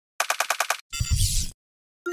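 Edited intro sound effect: a rapid run of six sharp clicks, about ten a second, then a short noisy burst with a low rumble that cuts off suddenly.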